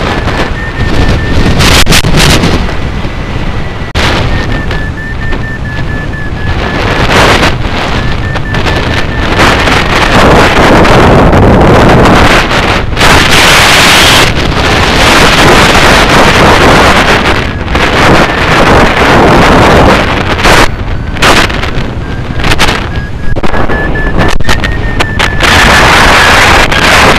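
Airflow rushing over the microphone of a hang glider in flight, loud and gusting, strongest around the middle. A faint high tone from the flight variometer comes and goes, wavering slightly in pitch.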